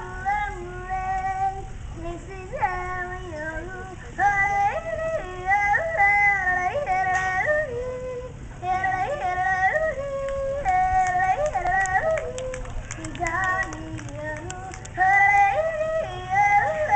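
A young girl singing and yodeling, her voice sustaining notes and breaking abruptly between low and high pitches.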